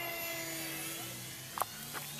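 Radio-controlled model jet flying past, its engine a steady whine that falls slightly in pitch as it goes by. A short sharp click about a second and a half in.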